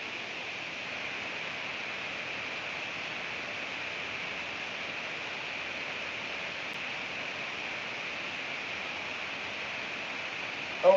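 Steady electronic hiss and static from a headset microphone, starting abruptly out of dead silence just before and holding at one level, with no voice coming through: the headset's audio is faulty and keeps cutting out.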